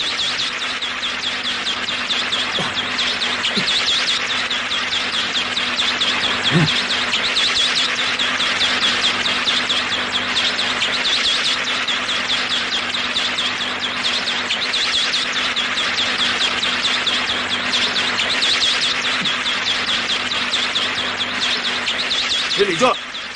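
A dense, steady chorus of insects chirping, in rapid repeated pulses, over a low steady hum.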